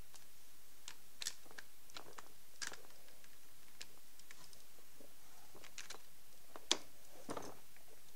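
Scattered light clicks and taps, with one sharper click about three-quarters of the way through.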